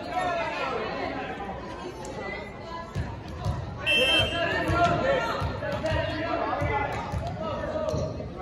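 Referee's whistle, one short blast about halfway through, signalling the serve, with a volleyball bounced several times on the hardwood gym floor around it.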